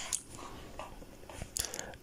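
Faint, scattered small clicks close to the microphone over low background noise, a few stronger ones near the end.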